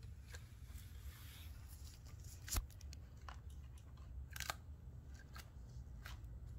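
Scattered light clicks and crunches as a monitor lizard bites at a slightly cracked quail egg held in its jaws and shifts about in a plastic tub, with one louder click about two and a half seconds in.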